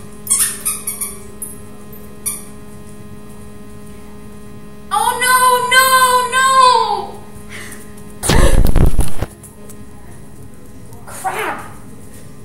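A rubber squeaky ball toy squeezed over and over, giving a run of pitched squeaks for about two seconds. A few light clicks come before it, and a loud rumble of about a second follows it.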